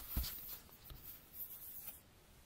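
Handling noise of the camera being moved and set in place: a soft knock early on, then faint scraping and rustling.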